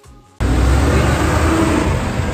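Loud road traffic noise that cuts in suddenly about half a second in, dominated by the low, steady sound of a heavy tipper truck's diesel engine running close by.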